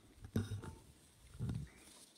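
Two soft, low thumps, about a second apart, with faint rustling and clicks: papers and hands handled on a wooden lectern, picked up by the lectern microphone during document signing.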